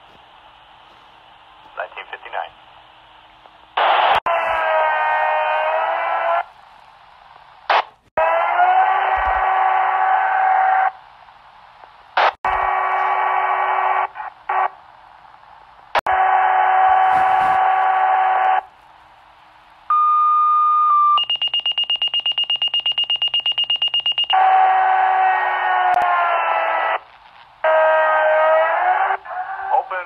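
Electric wood planer carried over a fire pager's speaker from a radio whose mic is stuck open, thin and cut off in the highs. It comes as about six runs of a few seconds each, the motor's pitch bending at the start and end of each run, with short quiet gaps between. About two-thirds of the way through, a steady high tone sounds for about three seconds.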